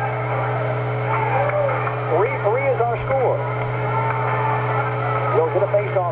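Indistinct background voices and arena sound on an AM radio broadcast of an ice hockey game, over a steady low hum.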